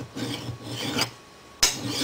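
A flat hand file rasping across the hardened top of a cartridge trim die, shaving off the end of a brass rifle case that sticks out because it is too long. One longer stroke in the first second, then a shorter, sharper one about a second and a half in.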